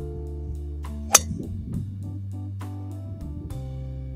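Background guitar music with a steady beat, cut by one sharp crack about a second in: a driver striking a golf ball off the tee.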